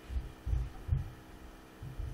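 Four soft, low thumps at irregular intervals over a faint steady hum.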